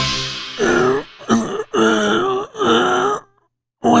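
A short music sting fades out, then a man's voice makes four wordless, drawn-out vocal sounds of about half a second each, with a wavering pitch, before going quiet near the end.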